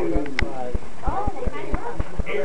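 People's voices talking, over a steady series of short low thumps about four times a second.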